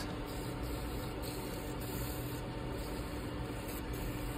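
Wood lathe running while 180-grit sandpaper is held against the spinning spindle: a steady sanding hiss over a low, even motor hum.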